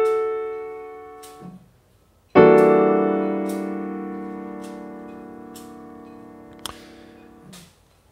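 Piano playing an E minor 7 flat 5 chord voiced E, G, B♭ in the left hand and D, G♭, A in the right. The notes just added ring and fade out, then about two and a half seconds in the whole chord is struck together and held, dying away slowly until it is released shortly before the end.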